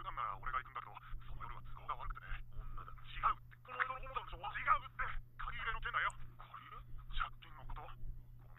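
Dialogue from the anime episode: voices talking back and forth, sounding thin and telephone-like with no highs, over a steady low hum.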